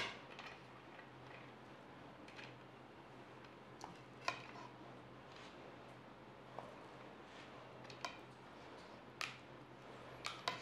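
A spoon clicking and tapping now and then against a metal biryani tin and plate as the rice is served out. A handful of short, faint clicks come a second or two apart, over a low steady hum.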